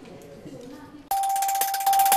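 Faint background voices, then about a second in a TV news channel's logo sting starts suddenly and loud: one held bell-like tone with a bright shimmer above it.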